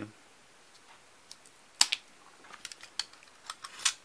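Cutting nippers snipping a side twig off a branch: one sharp snap about two seconds in, then a scatter of small clicks and taps near the end.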